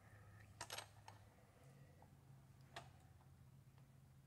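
Faint metal-on-metal clicks and taps as a small steel grinding vise is tilted and seated at an angle in a larger vise: a quick cluster a little under a second in and a single tap near three seconds, over a low steady hum.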